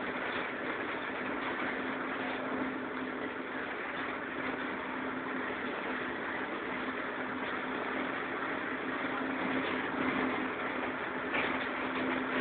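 Cabin sound inside a Karosa Citybus 12M city bus under way: the engine's steady drone with a constant hum, mixed with road noise, holding level throughout.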